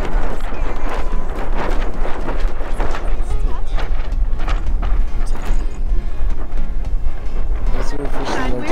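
Strong wind buffeting the microphone with a heavy low rumble, along with the sailboat's headsail flapping and snapping irregularly as the boat tacks.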